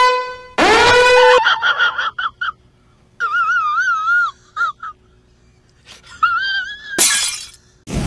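Edited-in sound effects and snatches of music: a tone that slides up and holds, then short phrases of high, warbling notes with a fast vibrato, and a brief crashing, shattering noise near the end.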